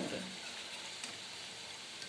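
Hot oil sizzling steadily in a kadhai as battered cabbage Manchurian balls deep-fry on a low flame.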